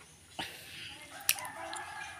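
A faint, drawn-out animal call held in the background for about a second and a half, with a couple of soft clicks.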